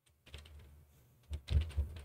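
Typing on a computer keyboard: a few keystrokes, then a quicker run of keystrokes from a little past halfway through.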